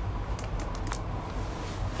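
Steady low hum of the elevator cab's ventilation fan, with a few light clicks between about half a second and a second in.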